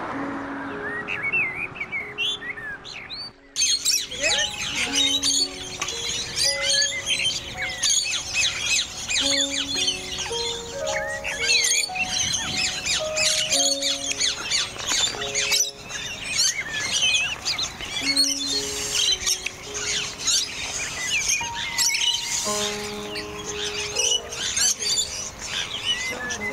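Background music with a slow melody of held notes, mixed with many small birds chirping and twittering. The birdsong thickens after a brief dip about three and a half seconds in.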